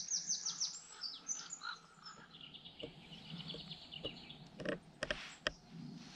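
Small songbirds singing: a quick run of falling high notes in the first second, then a fast trill of repeated notes, with a few light knocks near the end.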